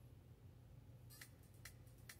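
Near silence over a low steady hum. From about a second in come faint, sharp ticks a few times a second: the quiet opening of the song's drum-machine beat starting to play back.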